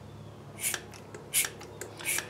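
Hand-squeezed vacuum brake bleeder pump drawing fluid and air from a truck's front brake caliper bleeder: a few short, faint rasping strokes, roughly half a second apart.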